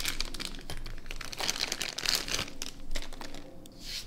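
Clear plastic bag crinkling in the hand as a folding knife is worked out of it: an irregular run of small crackles throughout.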